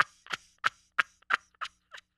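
A man laughing hard in short breathy bursts, about three a second, growing fainter toward the end.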